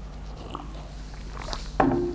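A man sipping a drink from a mug and swallowing, close to a microphone, with a short louder sound near the end as the mug is lowered back to the table.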